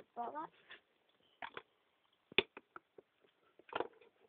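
A short voiced "oh", then scattered light taps and clicks from small plastic toy figures being handled, with one sharp knock a little past the middle.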